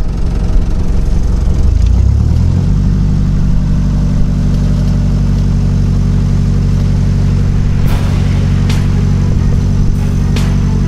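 Narrowboat's diesel engine running, its revs rising over about a second early on and then holding at a steady, higher speed as the boat moves ahead under power.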